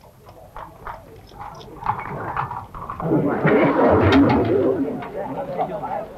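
Horses' hooves clopping at a walk on a paved street, a group of riders moving off together. About three seconds in, a crowd's many overlapping voices swell up over the hoofbeats.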